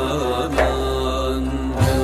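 Turkish naat, a devotional hymn in makam Rast: a melodic line over a sustained low drone, with a percussion stroke about half a second in and another near the end.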